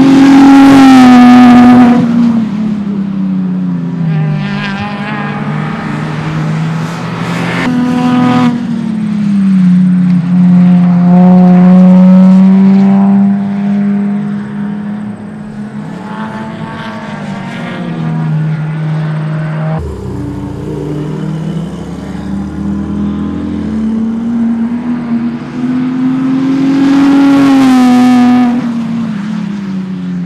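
Race car engines at high revs as cars go by on a road course, the engine note rising and falling in pitch with shifts and passes. The loudest pass-bys come right at the start and again near the end.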